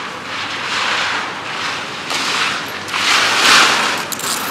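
Ski edges carving and scraping on hard snow in a giant slalom run, a hissing scrape that swells with each turn and grows loudest near the end as the skier passes close.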